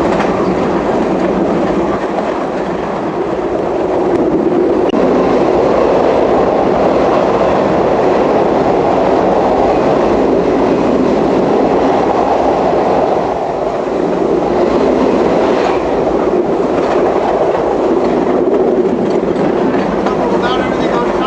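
Steady running noise of a passenger train's wheels on the rails, heard from the rear of the last car at speed. It grows louder about four seconds in as the train enters a tunnel, and eases briefly about thirteen seconds in as the train comes out.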